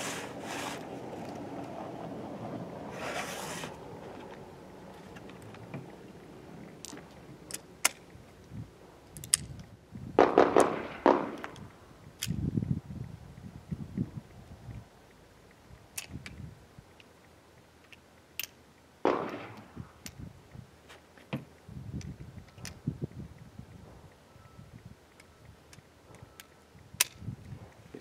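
Handling noise while a revolver is reloaded with new ammunition: scattered small metallic clicks and clinks of cartridges and gun parts, with a few louder scrapes and rubs of boxes and hands on the table.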